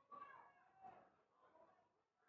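Near silence, with faint distant calling voices whose pitch rises and falls in the first second, then fades.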